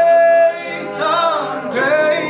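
Male a cappella group singing: a solo voice holds a long high note that breaks off about half a second in, then slides through a short bending vocal run, over sustained backing chords from the group.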